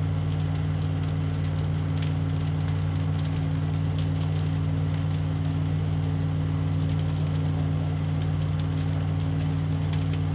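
Idling engine giving a steady low drone, with faint crackling from the burning wooden barn.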